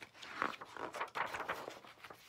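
Paper rustling and crackling as a page of a picture book is turned over by hand.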